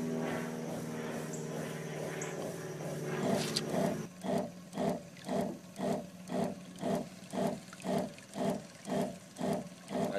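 A small motor runs with a steady hum. About four seconds in, it gives way to a rhythmic chugging, about two pulses a second, as the herbicide is pumped out through a hose trailing under the water.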